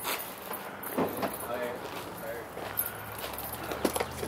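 Footsteps on gravel and a few sharp knocks and scuffs as gear is pushed into place in the back of a fully loaded van.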